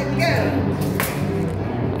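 Voices over steady background music, with one sharp click or tap about a second in.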